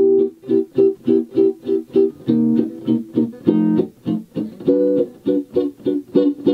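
Gibson L5-CES archtop electric guitar through a vintage Gibson EH-185 amplifier, comping short, detached chords at about four strikes a second. The chord changes about two, three and a half, and almost five seconds in. The four chords are the C major 7, C minor 7, F7, G major 7 progression: a minor iv and its backdoor dominant F7 resolving up a tone to the tonic.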